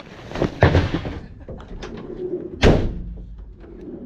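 Rustling and handling of a fabric bag with straps, then a single loud slam of a Renault Trafic van's rear door about two-thirds of the way through.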